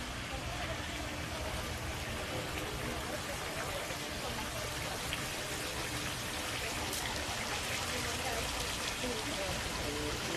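Water from a small fountain spilling out of a stone basin into a pond, a steady splashing trickle. People talk in the background.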